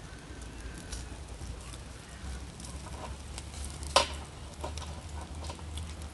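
Pork and potato skewers sizzling faintly over glowing charcoal, with sparse small crackles and one sharper click about four seconds in.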